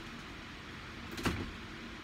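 A single brief sound about a second in from the blue rubber bulb pump of a DryPro waterproof cast cover being worked at its valve, which draws the air out of the cover, over a faint steady room hum.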